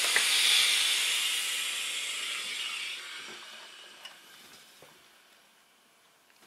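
Steam iron hissing as it presses a folded fabric edge, the hiss fading away over about five seconds, with a couple of faint small knocks near the end.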